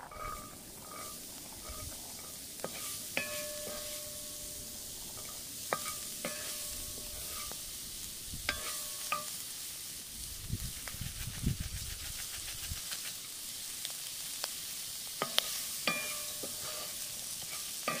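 Diced onions and pomegranate seeds sizzling in a black metal pan over a fire, the hiss growing louder as the seeds go in at the start. A wooden spoon stirs and scrapes the food, knocking against the pan now and then, each knock leaving a brief ringing tone.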